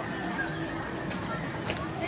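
Indistinct voices of people talking as they walk, with scattered light clicks.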